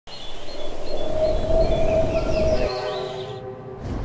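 A long held horn-like tone, shifting to a lower, fuller tone with strong overtones a little past halfway, while high bird-like chirps repeat above it; the sound drops away shortly before the end.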